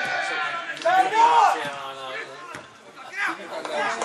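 Voices around a football match: shouted calls and chatter from players and spectators, the loudest a single shout about a second in.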